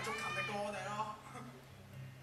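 A high-pitched voice calling out in drawn-out, wavering shouts that fade about a second in, over a steady low hum.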